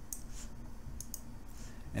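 A few faint computer mouse clicks while menu items are chosen, over a low steady hum.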